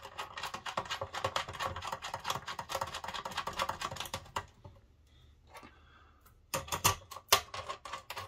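Rapid small metallic clicks and rattles of bolts, washers and a steel mounting plate being handled and screwed in by hand on an antenna panel. They stop for about two seconds past the middle, then a few louder knocks follow near the end.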